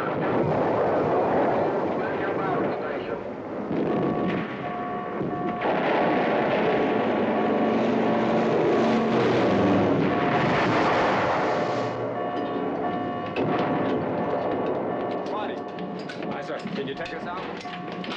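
Battle sound effects on a film soundtrack: bomb explosions and gunfire over a dense, continuous din. A steady two-note tone runs through the middle stretch.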